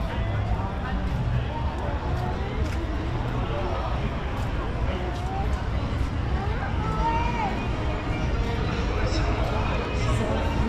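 Busy street ambience: several passers-by talking at once in indistinct chatter, over a steady low bass beat of music from nearby venues.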